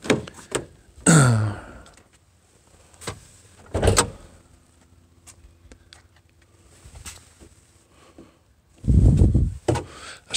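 Driver's door of a 1998 Ford F-150 being unlatched and swung open: a few short clicks, then a loud clunk about four seconds in. A louder low rumble follows near the end.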